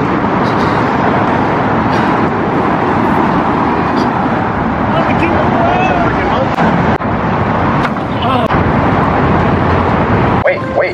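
Loud, steady street noise, a traffic-like rumble and hiss, with faint voices in it.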